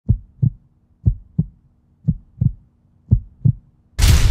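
Heartbeat sound effect: four low double thumps, lub-dub, about one a second.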